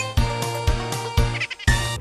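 Upbeat title-theme music for a children's TV programme: held tones over a beat about twice a second, ending just before the presenter speaks.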